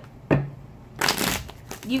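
Tarot cards being shuffled by hand: a sharp knock about a third of a second in, then a short rush of card noise about a second in.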